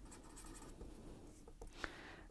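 Marker pen writing a word by hand: faint scratching of the tip on the writing surface, with a few short sharper strokes near the end.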